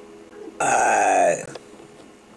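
A person's loud burp, just under a second long, its pitch dropping toward the end.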